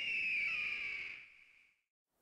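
A bird-of-prey screech used as a logo sound effect: one long, high cry that falls slightly in pitch and fades out before the end.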